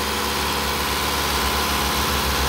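2012 Mitsubishi Outlander's engine idling steadily with a low, even throb, while it draws catalytic-converter cleaner through a thin line into the intake manifold.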